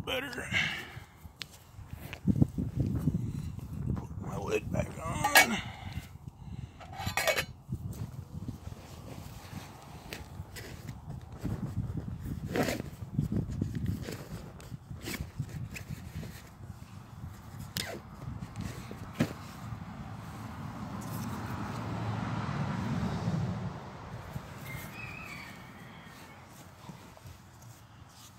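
Wind buffeting the microphone outdoors: an uneven low rumble that rises and falls in gusts, strongest about three-quarters of the way through, with a few short sharp sounds in the first few seconds.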